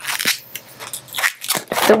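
Inflated latex twisting balloon being handled and worked at its nozzle end, the rubber rubbing and crackling in the fingers in irregular scratchy strokes.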